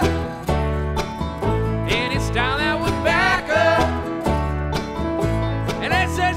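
A bluegrass string band playing an instrumental passage of the song, with plucked strings over sustained bass notes and no singing.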